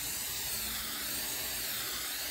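Aerosol hairspray can spraying one long, continuous hiss, its pitch wavering slightly as the can is swept across a glass print bed to lay down an even coat.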